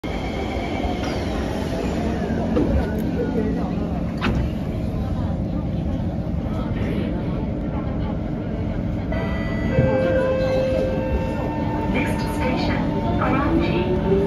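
Inside an SMRT C151 train standing at a station platform, with a steady background of train and station noise. About nine seconds in, several steady tones start up, and near the end a rising whine sets in as the train begins to pull away.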